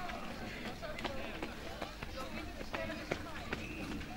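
Footsteps of a runner striking a synthetic running track as a string of short irregular ticks, with faint voices in the background.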